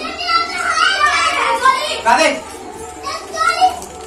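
Children's voices, talking and calling out excitedly as they play, in short high-pitched bursts of speech throughout.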